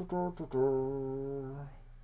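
A man's voice: a few syllables of speech, then a long, steady hesitation hum ("mmm") held for about a second that trails off.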